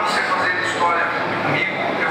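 A man's voice from a campaign video played over loudspeakers into a hall, with a steady noisy background.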